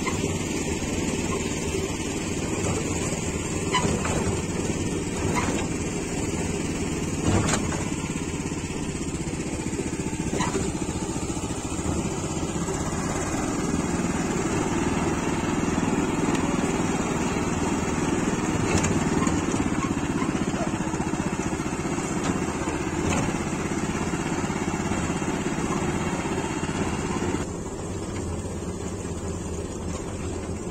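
MTZ Belarus walk-behind tractor's engine running steadily while driving along a field track, with a few knocks and rattles over bumps. The sound drops in level a couple of seconds before the end.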